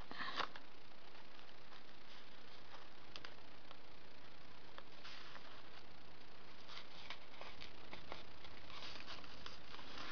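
Faint rustling and a few light ticks of cardstock and ribbon being handled and pressed down by hand, over a steady room hiss.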